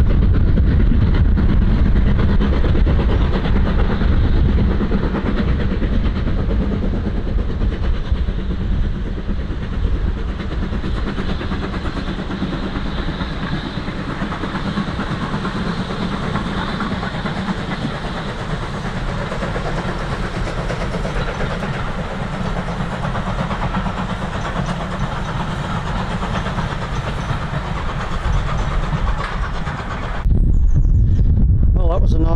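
BR Standard Class 2 2-6-0 steam locomotive 78022 passing with its train of coaches: a continuous rumble and clatter of wheels on the rails, loudest over the first ten seconds or so, then steady.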